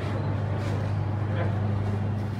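A steady low-pitched hum that holds one pitch throughout, with people's voices faintly behind it.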